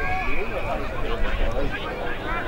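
Many spectators' voices calling and shouting at once, none of it clear speech, with a brief held high tone near the start and a steady low rumble underneath.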